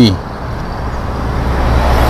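A road vehicle passing close by, its tyre and engine noise growing steadily louder, with a deep low hum from about halfway.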